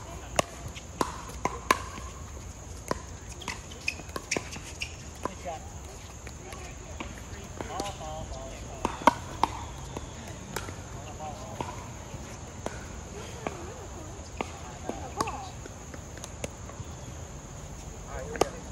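Pickleball play: hard paddles popping the plastic ball and the ball bouncing on the court, irregular sharp clicks throughout, the loudest just after nine seconds in. Voices are heard faintly now and then.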